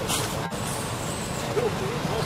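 Steady road-traffic rumble, with a short burst of hiss at the start and a few faint wavering calls near the end.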